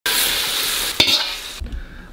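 Hot stir-fried food sizzling, a steady frying hiss with a short knock about a second in, the sizzle thinning and dying away past the middle.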